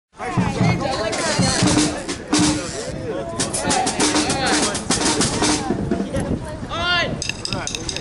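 Several people talking and calling out over loose, scattered drum and cymbal hits as drum kits are set up and warmed up; a single voice whoops, rising and falling, about seven seconds in.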